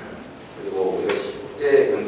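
A man speaking into a podium microphone, resuming after a brief pause about half a second in.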